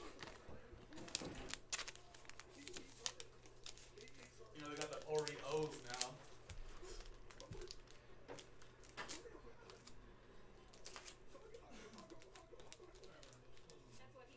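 Quiet crinkling, tearing and rustling of foil trading-card pack wrappers and cards being handled, with scattered sharp clicks throughout. A short hum of voice about five seconds in is the loudest sound.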